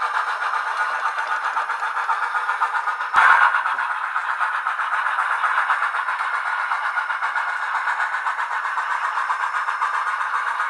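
Soundtraxx Tsunami2 DCC sound decoders in HOn3 brass D&RGW K-36 and K-28 2-8-2 steam locomotive models playing steam-locomotive sound through their small speakers: rapid, even chuffing with a thin sound and no bass. A sudden, brief louder burst comes about three seconds in.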